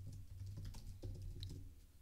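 Computer keyboard typing: a quick run of light, faint keystrokes.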